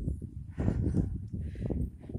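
Low, fluttering rumble on a hand-held phone's microphone as it is carried up a paved hill, with footsteps on the asphalt.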